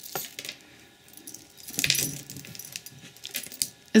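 A tangled pile of metal costume-jewelry chains, charms and beads jangling and clinking as hands rummage through it, in a few short spells: at the start, about two seconds in, and near the end.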